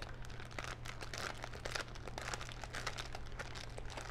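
Plastic bag crinkling faintly in the hands, many small irregular crackles, as its twisted top is wrapped with a rubber band.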